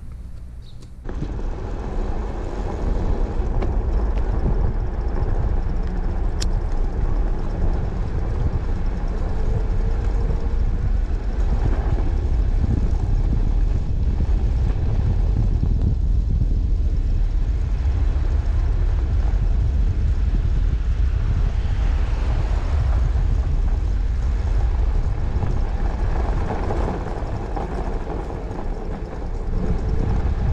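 Wind buffeting the microphone and wide road tyres rolling over fresh snow as an electric cruiser bike rides along: a steady low rushing noise that comes in about a second in.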